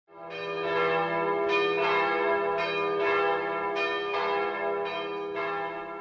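Bells ringing, fading in at the start, with a new strike about every second over a steady low hum.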